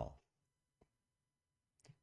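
Near silence in a pause of a man's speech: his word trails off at the start, a single faint click comes a little under a second in, and a brief soft sound comes just before he speaks again.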